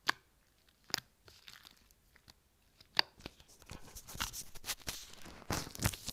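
Thick slime with small beads mixed into it, squeezed and kneaded by hand close to a phone microphone. First come a few sharp, separate pops about a second apart; then, from about halfway, a dense run of wet crackling and squelching that is loudest near the end.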